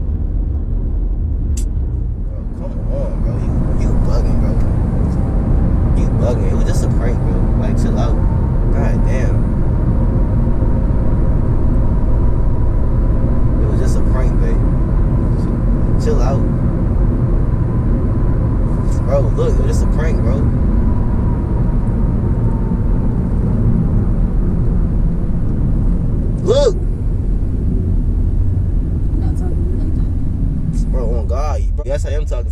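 Road and engine noise inside a moving car's cabin: a steady low rumble that swells about three seconds in, with a few faint clicks over it.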